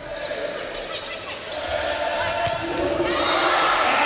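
Indoor volleyball rally in a gym: a few sharp ball hits over a crowd's noise, which swells into cheering in the last second or so as the point is won.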